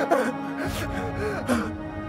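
A man gasping and crying out in pain in short, arching cries, over a steady background music drone.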